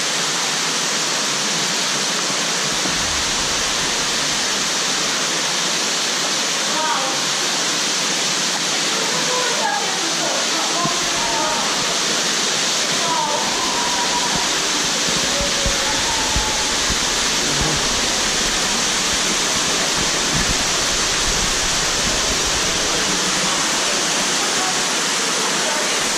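Steady, loud rush of water from a waterfall pouring into a canyon pool, with faint voices in the middle.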